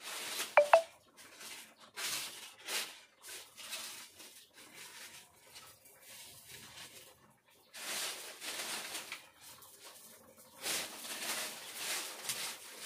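Food frying in oil in a wok, the sizzling coming and going in uneven bursts, with two sharp metallic clinks of a utensil against the pan about half a second in.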